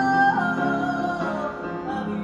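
A woman singing into a microphone over grand piano chords: she holds a long note, steps it down and lets it slide lower until it fades away just past the middle, leaving the piano chords ringing on.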